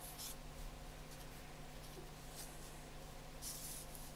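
Marker pen scratching across paper in short drawing strokes: a brief stroke at the start and a longer one near the end.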